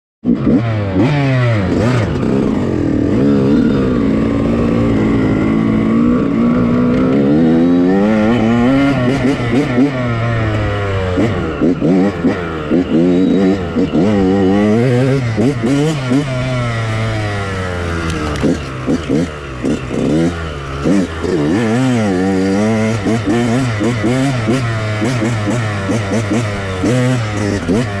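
Off-road dirt bike engine being ridden hard, revving up and down with the throttle so its pitch keeps rising and falling. In the second half the sound breaks into short on-off blips of throttle.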